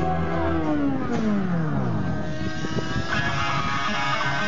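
An engine-like sound gliding steadily down in pitch over about two seconds, bridging two pieces of music; new guitar music comes in about three seconds in.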